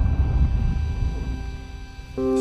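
A deep cinematic boom from an animated logo sting. Its low rumble fades slowly and is nearly gone by the end.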